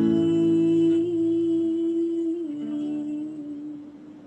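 A woman singing a long held note, which steps down to a lower note about two and a half seconds in, over acoustic guitar chords ringing underneath; the whole sound fades away near the end.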